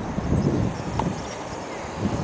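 Irregular low rumbling and knocking of wind and handling on a handheld camera's microphone as the camera moves, with one sharp click about a second in.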